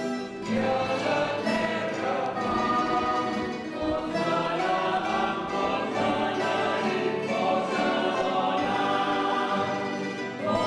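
Church choir singing a hymn during the Mass, with guitars accompanying, in a reverberant stone church.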